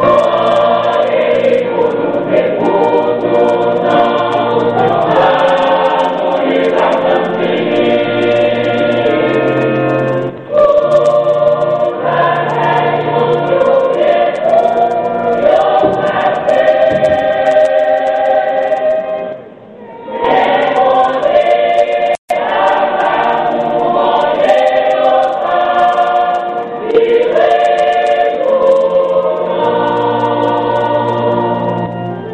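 Choir singing a gospel song, in sustained phrases with short breaks about ten and twenty seconds in. A split-second dropout in the sound comes a little past twenty seconds.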